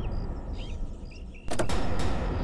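A steady low rumble with short, irregular high chirps over it, cut across about one and a half seconds in by a sudden loud hit that rings on.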